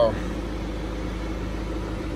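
Steady machine hum with a few constant low tones, unchanging throughout.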